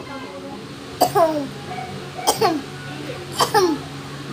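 A voice making three short "huh" sounds about a second apart, each falling in pitch, over a steady low hum.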